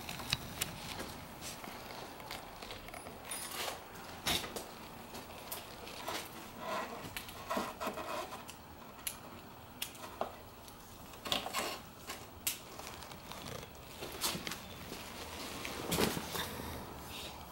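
Gloved hands handling a motorcycle's brake fluid reservoir and its bent mounting bracket at the handlebar: quiet, scattered small clicks and taps of parts, with light rustling of gloves and sleeve.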